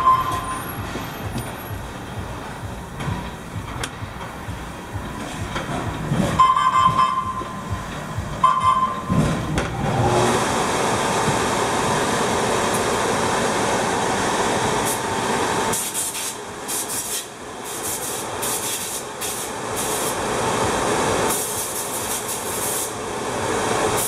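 Electric motor on a test bench, switched on about ten seconds in and then running steadily with a constant whine. A few short high blips come before it starts.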